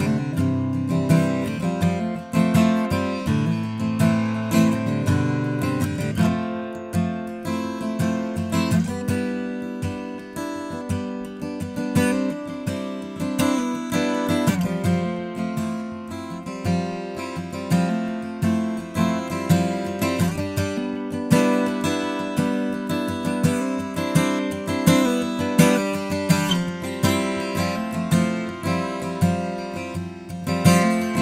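Taylor 324ce all-mahogany acoustic guitar being played, chords and notes ringing over a steady rhythm of plucked and strummed attacks, picked up by a microphone in front of the guitar rather than its pickup.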